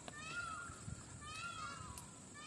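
Faint, repeated calls of an animal or bird: a short rising-then-falling call comes three times, about once a second.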